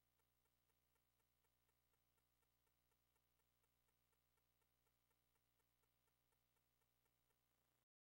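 Near silence: only a very faint steady hum with faint, regular ticking about four times a second, cutting off suddenly just before the end.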